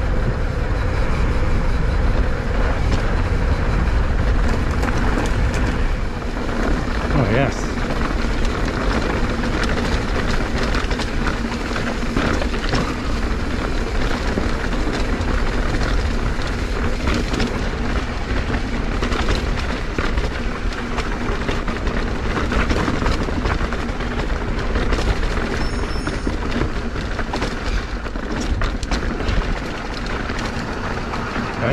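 Mountain bike rolling over a rough, stony trail: a steady rumble of tyres on rock with frequent small rattles and knocks from the bike, and wind buffeting the body-mounted camera's microphone.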